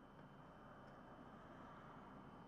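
Near silence: a faint, steady low hum and hiss with a thin high whine, and no distinct sound events.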